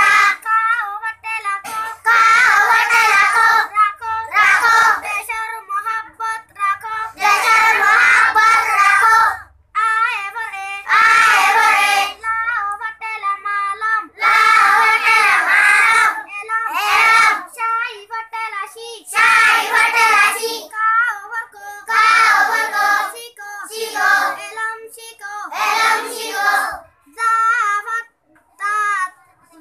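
A group of children singing together in unison, in short phrases of a second or two with brief pauses between them.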